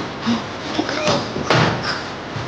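A sharp knock or click about one and a half seconds in, among smaller handling and movement sounds.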